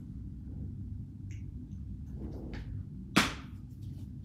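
Clear plastic Blu-ray case being handled and opened: a few faint plastic clicks, then one sharp snap about three seconds in as the case comes open.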